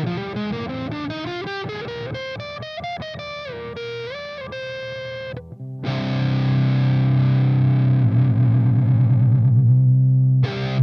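Strydom Magna ST20M Strat-style electric guitar played through high-gain distortion: a climbing single-note lead run with string bends, a brief break about five and a half seconds in, then a long held low note that wavers with vibrato near the end.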